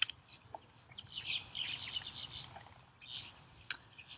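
Birds chirping in the background, with a busy run of calls through the middle and a shorter group near the end. A couple of sharp clicks fall at the start and near the end.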